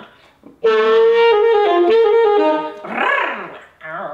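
Alto saxophone playing a short phrase of a few notes with a growl, the player humming into the horn while blowing to roughen the tone; the first note is held and the line then steps lower. A short laugh follows near the end.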